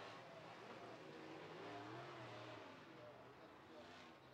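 Faint race car engines, barely above near silence, their pitch rising and falling as they rev.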